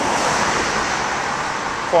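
Road traffic on a busy main road: cars passing close by, a steady rush of engine and tyre noise.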